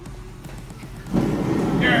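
Gas forge burner flaring up into a loud, steady roar about a second in, as the gas is turned up and flame fills the firebrick chamber.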